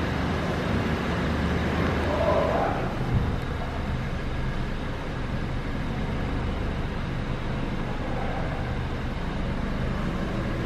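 Steady low hum and hiss inside the cabin of a 2015 Honda Vezel with its ignition on and dashboard lit.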